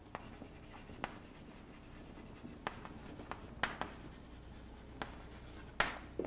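Chalk writing on a blackboard: faint scratching strokes broken by a series of sharp taps as the chalk strikes the board.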